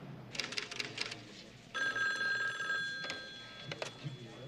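A desk telephone's bell rings once, a steady ring lasting about a second before it dies away. A rattle of sharp clicks comes before it, and a click near the end as the handset is lifted.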